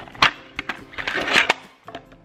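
A clear plastic audio cassette handled on a wooden tabletop: a sharp click, then a scrape as it is pushed across the wood, ending in another click.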